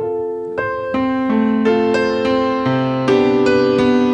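Grand piano played solo: a slow introduction of single notes that thicken into sustained chords, with deep bass notes coming in near the end and the playing growing louder.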